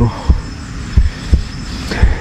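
Soft low thumps repeating evenly, about three a second, like a pulse.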